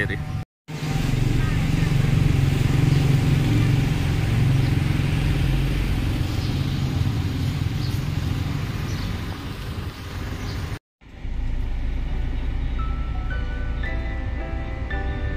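Roadside street and traffic noise with a heavy low rumble. After a sudden cut near the end, soft background music begins over the low engine and road rumble of a moving minibus.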